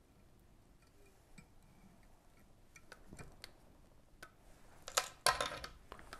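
Faint ticks and rustles of fingers and fly-tying thread as a whip finish is tied by hand at the vise, with a louder brushing rustle about five seconds in.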